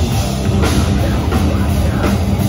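Hardcore band playing live: distorted electric guitar and bass over a drum kit, loud, with cymbal and snare hits cutting through at intervals.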